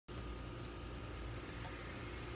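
Steady, faint outdoor background noise: a low rumble under an even hiss, with no distinct events.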